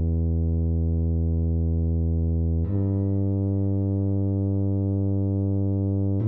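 Computer-rendered tuba playing two long, held low notes, one per bar, stepping up a little to the second note about two and a half seconds in.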